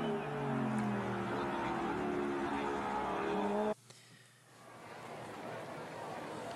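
Die-cast toy cars rolling along a plastic track, a steady whirring hum that cuts off abruptly near the middle, followed by faint hiss.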